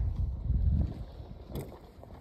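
Wind buffeting the microphone as a low rumble, strongest in the first second and then easing off.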